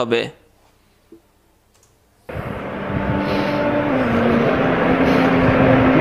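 A short silence, then about two seconds in a loud steady rushing noise with a low hum starts abruptly and carries on, like a vehicle's engine running.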